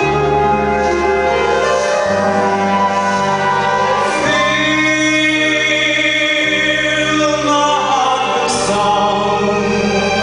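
Live orchestra accompanying a male singer on a handheld microphone, with long held notes over a bass line whose chords change about every two seconds.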